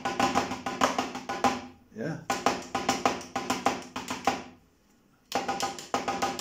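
Drumsticks playing a quick, even run of strokes on a Roland electronic drum kit pad, about six a second, working through a rudiment's single-hand pattern in groups of three. The strokes come in two runs of about two seconds, stop for just under a second near the end, then start again.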